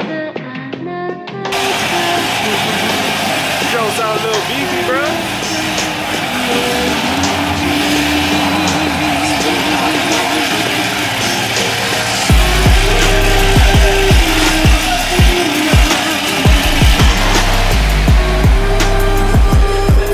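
A Chevrolet Corvette's V8 engine running loudly, a dense noise that starts suddenly about a second and a half in. Hip-hop music with a heavy bass beat comes in under it about twelve seconds in.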